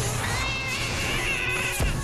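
Cartoon fight-cloud sound effect: dense scuffling noise under a high, wavering cat-like yowling screech, ending with a thump just before the end.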